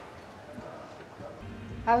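Quiet background ambience from a TV drama's soundtrack, with a low steady hum that comes in about one and a half seconds in as the scene changes. A woman's voice begins right at the end.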